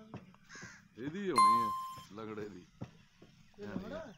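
Crows cawing several times in short calls, with a single bright bell-like ding about a second and a half in, the loudest sound.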